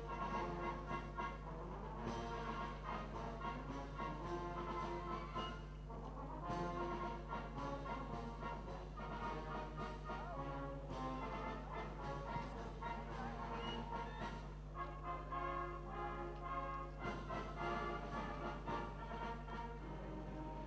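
Brass instruments playing music, a steady run of changing notes throughout.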